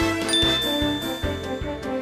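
A small bell strikes once, its high ring lingering for over a second, over background music with a steady beat.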